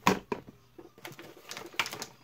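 A small cardboard product box being set down on a desk: a sharp knock as it lands, then a few lighter clicks and rustles as it is handled into place.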